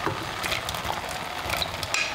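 Chopped rhubarb scraped with a wooden spoon off a bowl into a pot of boiling sugar syrup: a steady bubbling hiss from the boiling syrup, with a few sharp knocks and scrapes of the spoon against the bowl.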